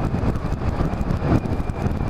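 Yamaha Majesty maxi scooter riding steadily along a road: engine and road noise with wind buffeting the microphone.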